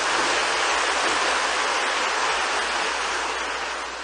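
Congregation applauding: a dense, steady clapping that tapers off over the last second.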